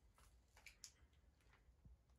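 Near silence: faint room tone with a few soft, scattered clicks and ticks.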